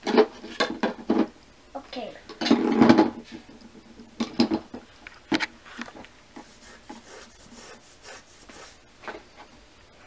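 Small plastic toy dishes and a toy cake stand being handled and set down: a run of light clicks and knocks, thick for the first several seconds and then thinning out.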